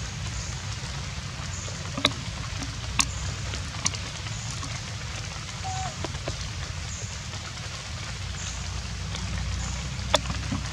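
Steady rain falling, an even hiss over a low rumble, with a few sharp drop clicks about two, three and four seconds in.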